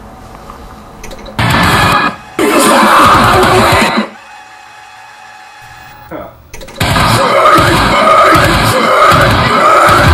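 Music video soundtrack from a cinematic scene: loud stretches of voices mixed with dramatic music and sound, starting about a second and a half in, dropping to a quiet stretch around the middle, then loud again from about seven seconds in.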